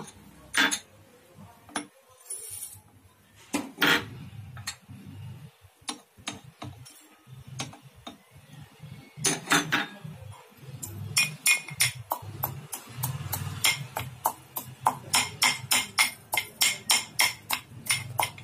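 Metal pestle pounding in a metal mortar, crushing spices. A few scattered clinks come first, then a steady run of sharp metallic strikes, about two or three a second, fills the second half.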